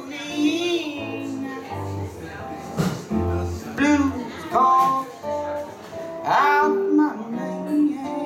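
Live blues band playing a passage between sung lines: low bass notes, guitar and a single drum hit near the middle, with short melodic phrases that bend in pitch above them.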